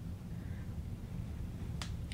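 A steady low room hum, with one sharp, short click near the end.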